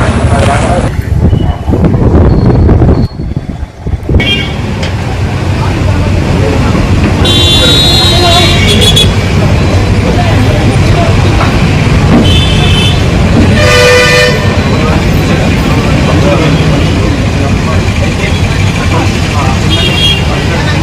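Road traffic with a steady low engine rumble and vehicle horns honking: one long honk about a third of the way in, then two shorter honks a few seconds later.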